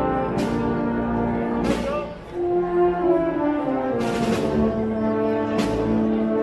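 A municipal wind band plays a processional march: sustained brass chords, with percussion strikes that cut across them every second or two and a brief drop in loudness about two seconds in.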